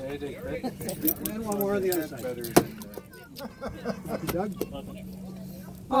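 Keys jangling, with scattered clicks and a sharp knock about two and a half seconds in, over indistinct voices and a steady low hum that starts about half a second in.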